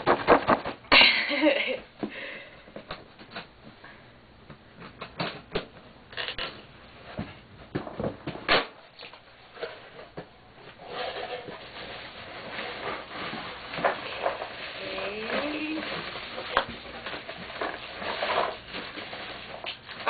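A mailed cardboard package being opened and unpacked by hand: a loud rip about a second in, then irregular rustling, scraping and knocks as the wrapping and contents are handled.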